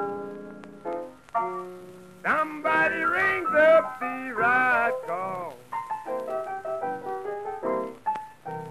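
Prewar blues piano playing chords, with a man's voice singing a long, wavering line from about two seconds in to nearly six, then piano alone again. An early-1930s 78 rpm record.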